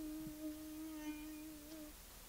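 A voice holding one long low hummed note that slowly fades and stops shortly before the end.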